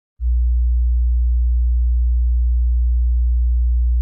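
A single steady, very deep sine tone, a low bass drone held at one pitch, starting abruptly a moment in and holding loud and unchanging.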